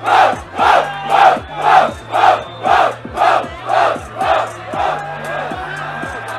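Crowd shouting together in rhythm, about two shouts a second, over a hip-hop beat, cheering the verse just delivered; the shouts fade out near the end, leaving the beat.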